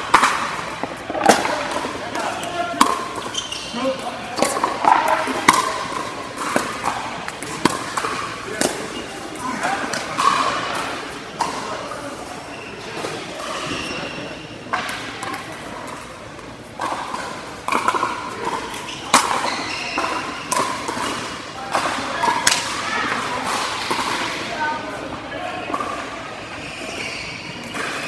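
Pickleball paddles striking the hard plastic ball: irregular sharp pops from this and neighbouring courts, echoing in a large indoor court hall over a murmur of voices.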